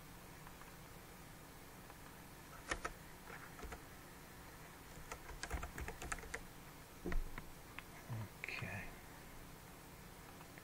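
Typing on a computer keyboard: scattered key clicks starting about three seconds in, ending with one louder click about seven seconds in.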